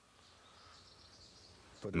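Faint steady background hiss in a pause between a man's sentences; his voice starts again right at the end.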